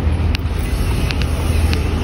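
Wind buffeting a phone's microphone outdoors, a loud low rumble that picks up at the start, with short light ticks every half second or so.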